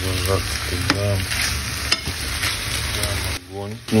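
Marinated pork shoulder and chopped onion sizzling as they fry in oil in a nonstick pan, with a spatula stirring and clicking against the pan. The sound drops out briefly near the end.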